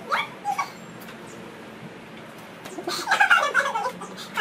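Girls giggling: a short burst of laughter at the start, a lull, then louder, high-pitched giggling from about three seconds in.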